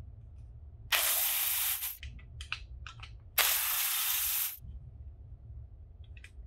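Two sudden spray bursts, each a steady hiss lasting about a second, one about a second in and the other near the middle. A few light clicks fall between them.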